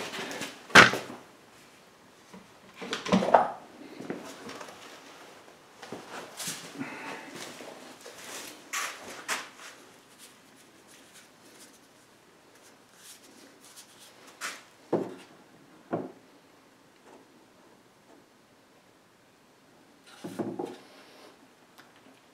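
Spring clamps being squeezed open and set onto a glued wooden tray on a workbench: irregular clicks and knocks of the clamps against the wood and bench, the sharpest about a second in, with quiet pauses between.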